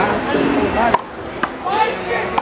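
Sharp smacks of a rubber handball, three in the second half, bouncing on the concrete court and struck by hand as a player readies the serve, with voices around the court.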